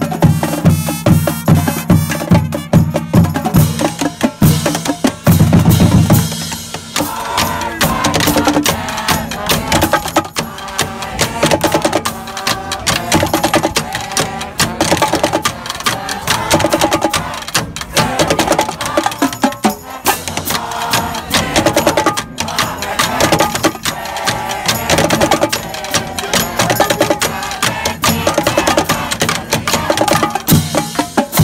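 High school marching band playing in the stands: the drumline beats a steady cadence with snare and bass drums, and the brass come in with a rhythmic tune about seven seconds in.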